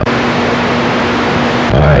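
CB radio receiver putting out a loud steady hiss with a faint low hum while the other station is keyed up but not yet talking; his voice comes in near the end.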